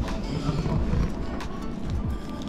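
Background music.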